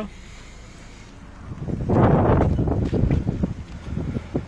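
Wind noise and handling noise on a phone's microphone. It is quiet at first, then loud and buffeting from about halfway through, as the phone is carried out of the car.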